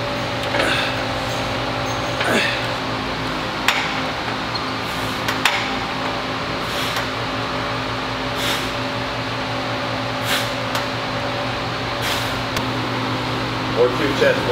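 A cable pulldown machine in use: the weight stack clinks about every second and a half, one clink per rep, over a steady hum of gym air conditioning. A few short, falling voice sounds come in the first couple of seconds.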